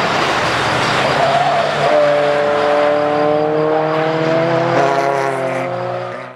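A motor vehicle engine. A loud rushing noise comes first, then from about two seconds in a steady pitched drone that slowly rises in pitch, as with gradual acceleration. It cuts off suddenly at the end.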